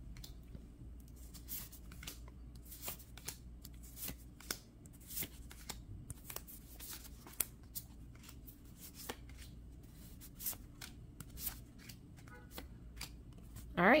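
Magic: The Gathering trading cards being handled and flipped through one at a time: faint, irregular snaps and slides of card stock over a low steady room hum.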